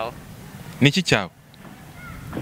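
A man's voice says a short word ("sir") about a second in, over a steady low outdoor background hum.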